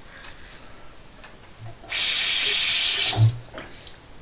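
Faint scraping strokes of a double-edge safety razor on long whiskers, then a sink tap runs for about a second and stops, with a low knock as it ends.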